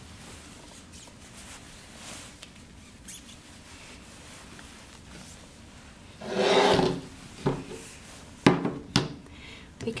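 Handling noise from a multiparameter water-quality probe being picked up and moved. Faint rubbing gives way to a loud rubbing rustle of under a second about six seconds in, followed by a few sharp knocks near the end.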